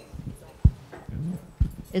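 Handling noise from a handheld microphone as it is passed over and switched on: two low thumps about a second apart.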